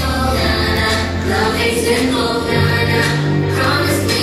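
Children's choir singing over musical accompaniment, with sustained low bass notes that shift to a new note about two and a half seconds in.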